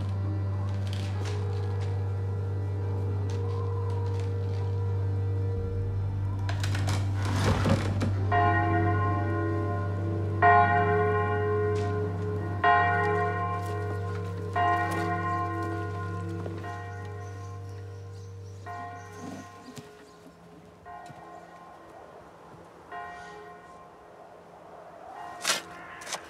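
A church bell tolling slowly, about one strike every two seconds, starting about a third of the way in and growing fainter toward the end. Under it runs a low steady drone that stops with a few strikes still to come, and a brief rushing noise comes just before the first strike.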